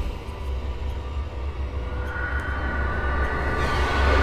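Horror trailer sound design: a deep rumbling drone with a high, thin whine swelling in over the second half as the level slowly builds.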